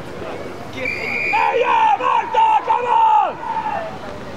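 People shouting: a run of loud, high-pitched calls starting about a second in and breaking off shortly before the end.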